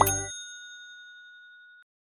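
A single bright ding from the logo jingle's sound effect, struck at the start and ringing out as a clear fading tone, cut off shortly before the end. The jingle's music stops about a third of a second in.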